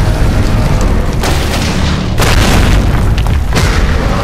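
Loud booming impact sound effects laid over music, with several sudden hits about a second apart.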